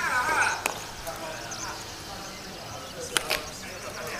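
Voices calling out across an outdoor softball field, a shout at the start and fainter calls after it. Two sharp knocks come close together a little after three seconds in.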